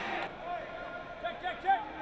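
Faint, distant voices of football players calling out on the field, a few short raised shouts over a low background hum.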